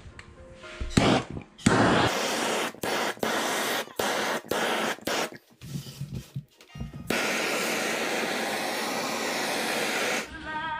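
Hose-extension gas torch flame hissing as it scorches pine wood, in several short bursts with brief gaps, then burning steadily for the last three seconds.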